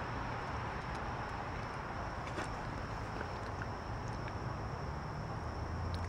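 Steady outdoor background: a low hum with a thin, high insect drone. Faint mouth sounds come through as a fresh fig is chewed close to the microphone.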